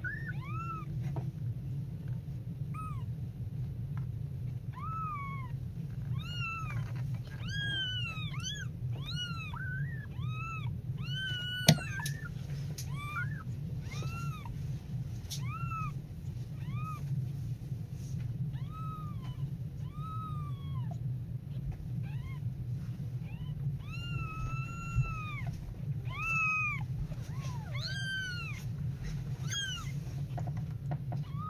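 Very young kittens mewing over and over, short high arching cries about one or two a second, over a steady low hum. A single sharp click comes about twelve seconds in.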